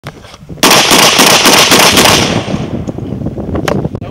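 Mossberg 930 semi-automatic 12-gauge shotgun fired rapidly until its extended magazine is empty: a fast string of shots, about five a second, lasting about a second and a half, then the echo dies away. One more sharp knock comes near the end.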